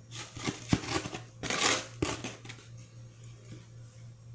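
Grated toilet-block shavings tipped from a plate into a pot of grated soap: a run of clicks and knocks, then a louder rustling scrape about a second and a half in, fading to a few light ticks.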